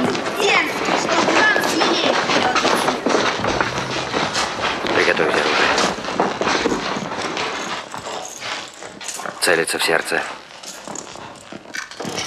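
Indistinct voices of several men over shuffling footsteps as a group moves along a corridor, with some sharp knocks; the sound gets quieter in the second half.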